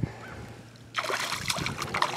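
A hooked bass thrashing at the water's surface, a run of quick splashes starting about a second in.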